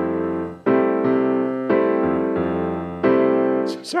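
Piano chords in a bossa nova pattern: a chord rings at the start and three more are struck about a second apart, each held until the next.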